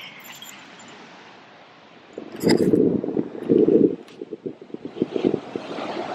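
Wind gusting against the microphone in loud, irregular low buffets from about two seconds in. The hiss of breaking surf rises near the end.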